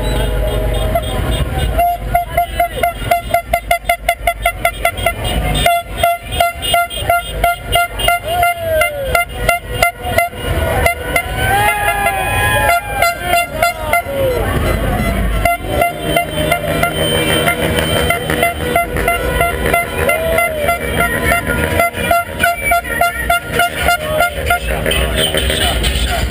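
Car horns honking in a street car parade, one held horn tone under a fast rhythmic pulsing of about three to four beats a second through the first half, with people shouting.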